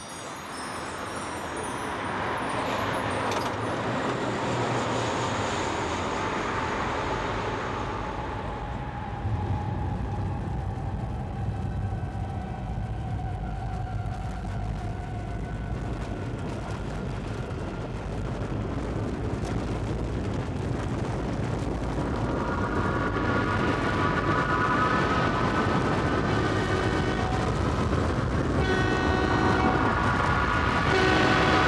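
Rumbling train noise that grows louder, with a long slowly falling tone in the first half and a horn sounding several pitches together in the last third.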